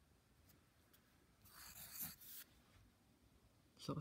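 Pencil drawing a circle on lined notebook paper: one short scratching rub about a second and a half in, lasting about a second.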